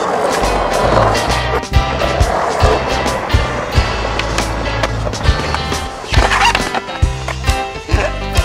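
Skateboard wheels rolling on concrete, with a grind on a metal rail about halfway through, under a music soundtrack with a steady drum beat.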